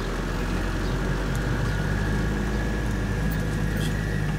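Truck engine running steadily while driving, a low, even drone with road noise heard from inside the cab.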